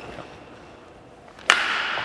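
A badminton racket strikes a shuttlecock once in a backhand drive, about a second and a half in. It makes a single sharp crack that rings on in the hall.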